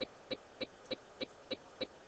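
A steady, evenly spaced ticking, about three short ticks a second, each a brief pitched click.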